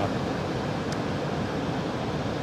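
Steady rush of ocean surf and wind.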